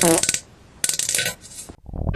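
Three short, bright metallic clinks, the first with a ringing tone that falls in pitch.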